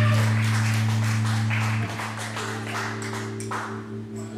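Live band music: a strong held low note with sharp high hits over it cuts off suddenly about two seconds in, and quieter playing continues after.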